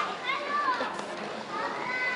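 Spectators' voices in a sports hall, several high-pitched calls and shouts rising and falling over the crowd's murmur.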